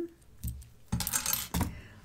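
Loose costume jewelry clinking and jingling as pieces are handled: a single click about half a second in, then a short metallic jingle around the middle.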